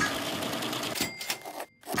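Banknote counting machine riffling rapidly through a stack of bills, a dense mechanical flutter. It ends in a few sharper clicks and cuts off abruptly about a second and a half in.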